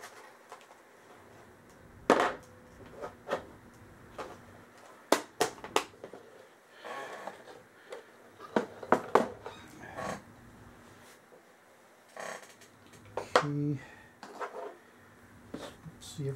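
Small hand tools and screwdriver bits handled on a table: scattered sharp clicks and taps, a few in quick runs of two or three, with soft rustling between.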